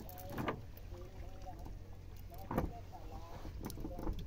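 Faint distant voices over a low steady hum, with two short knocks or splashes about two seconds apart.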